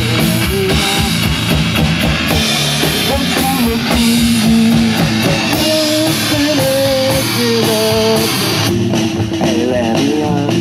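Live rock band playing: electric guitar and drum kit together, with a melody of held notes coming through in the second half.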